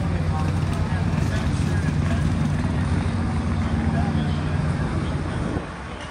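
A steady low engine drone that cuts off sharply about five and a half seconds in, with faint voices under it.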